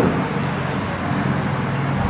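Steady background noise with no speech, an even hiss-like hum.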